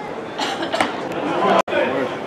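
Indistinct chatter of many voices from spectators and players, with a few sharper calls around half a second in. The sound drops out for an instant near the end at an edit.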